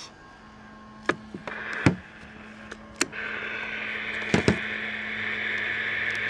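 Several sharp clicks and knocks over a steady low electrical hum, with a hiss coming in about three seconds in.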